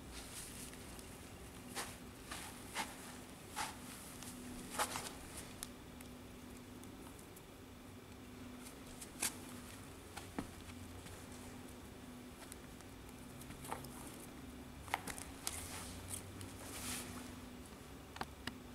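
Scattered faint rustles and light clicks of a rubber resistance band being threaded through and looped around a kettlebell's handle, over a faint steady hum.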